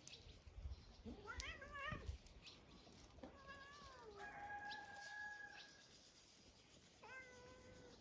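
Cat meowing four times: a wavering meow, a falling one, a long level one and a shorter one near the end. There are a few low thumps in the first two seconds.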